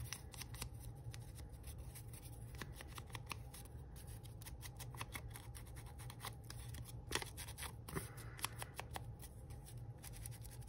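Foam ink-blending tool dabbed and rubbed along the torn edges of a strip of old book-page paper, with the paper rustling in the hand: a quick, uneven run of small scratchy clicks and rustles.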